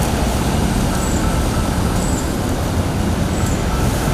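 Steady traffic and vehicle noise with a low engine rumble, from a car running close by.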